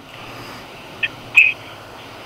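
Faint steady hiss of a recorded telephone line in a pause between voices, with two short high blips about a second in.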